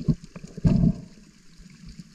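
Sea water heard underwater through a submerged camera: muffled low gurgling and bubbling, with a louder surge a little over half a second in.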